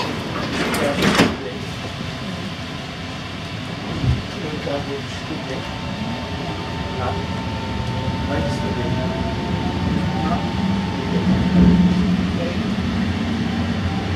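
Ottawa O-Train Confederation Line light-rail car pulling away from a station, heard from inside the car: steady running noise that grows louder, with a whine rising in pitch as the train gathers speed. A single knock about four seconds in.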